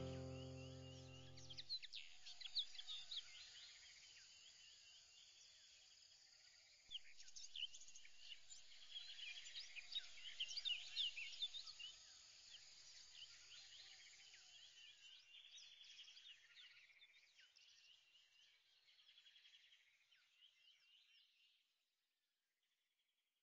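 A music track dies away in the first two seconds, leaving faint birdsong: many short high chirps and whistles with a rapid trill. It swells about seven seconds in, then fades out just before the end.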